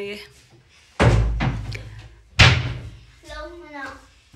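Two loud bangs about a second and a half apart, each dying away over about a second, like something being banged or slammed in a small room; a higher-pitched voice follows near the end.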